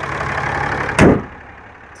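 A 6.7-litre Cummins inline-six turbo-diesel idling steadily with the hood open. About a second in the hood is slammed shut with one loud bang, and afterwards the engine sounds muffled and quieter.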